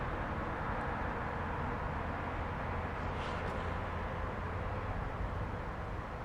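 Steady outdoor background noise with a low rumble, with a brief faint higher sound about three seconds in.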